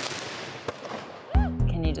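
A rush of hissing noise that fades away over about a second, with one sharp click in the middle, followed by a voice over background music.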